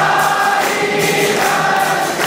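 A crowd of devotees singing the aarti together in long, wavering sung notes.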